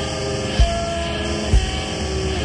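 Slow doom metal from a 1990 demo tape: distorted electric guitar chords held and changing, over a heavy low beat about once a second.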